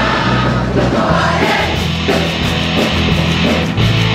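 Large choir of teenage voices singing a rock song in French, with a band accompaniment of bass and drums playing steady bass notes beneath.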